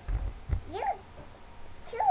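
A young child's two short, high-pitched vocal sounds, one rising and falling about a second apart from the other, after a few low thumps close to the microphone near the start.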